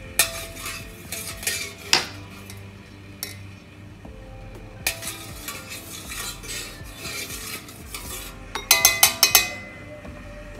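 A utensil stirring salt into water in a stainless steel hotpot, scraping and clinking against the pot in two spells. Near the end comes a quick run of about five sharp metallic taps on the pot, which ring briefly; these are the loudest sounds.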